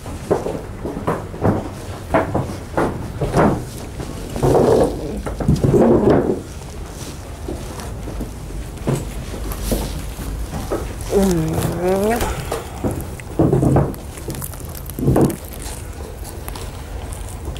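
Indistinct talking in short bursts, with one longer voice whose pitch slides up and down about eleven seconds in.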